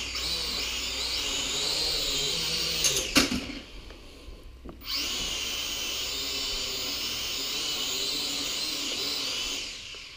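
Syma X5C toy quadcopter's four small motors and propellers running with a steady high whine. A couple of knocks come about three seconds in as the motors cut out. They spin up again a second and a half later and cut out just before the end.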